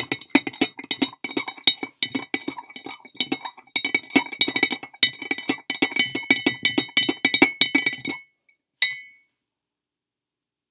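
Metal spoon stirring baking soda into water in a glass mason jar, clinking rapidly against the glass with a ringing tone. The clinking stops about eight seconds in, followed by one last clink a second later.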